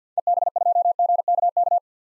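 Morse code sent as a steady single-pitch tone, keyed very fast at 50 words per minute: a ham radio callsign spelled out in quick groups of dits and dahs for about a second and a half.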